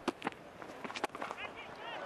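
Quiet cricket-ground sound: a few sharp knocks in the first second, among them the bat striking the ball as it is lofted over the top, then faint distant voices.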